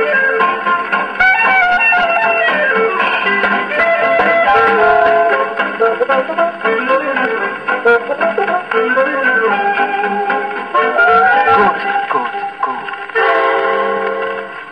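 A 1941 Columbia 78 rpm shellac record of a German band playing on a gramophone: an instrumental passage with guitar and brass, ending about 13 seconds in on a held final chord.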